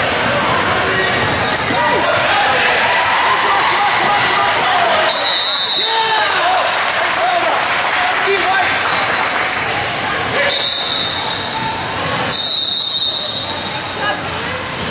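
Sounds of a basketball game in a gym: a ball bouncing on a hardwood court, sneakers squeaking on the floor, and players' and spectators' voices echoing in the hall.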